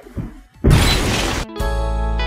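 A loud crash-like burst of noise, like breaking glass, lasting just under a second from about two-thirds of a second in. About a second and a half in, music with a plucked guitar starts.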